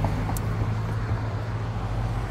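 Road traffic passing close by: a steady low rumble of car engines and tyres.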